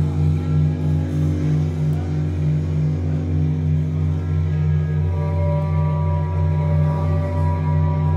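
Live electronic music from a table of synthesizers and modular gear: a loud sustained low bass drone with a pulsing tone above it. Higher held tones come in about five seconds in.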